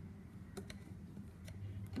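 A few faint clicks as a thin metal tool knocks and scrapes against the inside of a plastic vault cylinder, working a part loose from glue dots.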